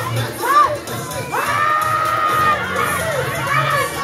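A crowd of children shouting and cheering, many voices overlapping, with one long high-pitched shout held for about a second a little past the middle.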